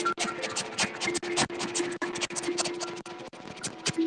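Experimental electronic soundtrack: rapid, irregular scratchy crackles, several a second, over a low steady hum that drops in and out.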